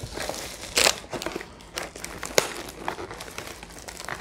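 Clear plastic wrap crinkling and crackling as hands pull at it inside a cardboard box, in a series of short crackles with a louder burst about a second in.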